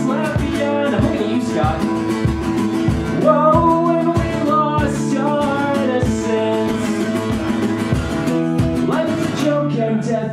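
A guitar strummed in a steady rhythm, about two strokes a second, with a voice singing over it in places: a live song.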